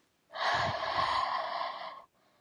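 A woman's long, breathy breath close to a phone microphone. It starts about a third of a second in and lasts about a second and a half, with no voice in it.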